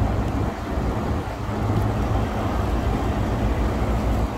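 Steady low rumble of running machinery, holding level without change.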